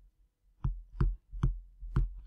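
A digital pen tapping and knocking on its writing surface as words are handwritten: about four light, separate knocks, roughly half a second apart, over a faint low hum.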